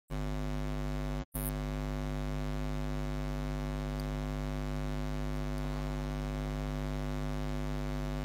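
Steady electrical mains hum in the microphone's sound line: a deep, even buzz with many overtones. It cuts out for an instant about a second in, then carries on unchanged.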